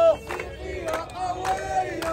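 A crowd of protesters chanting a slogan together, called out by a leading man's voice, with rhythmic hand clapping.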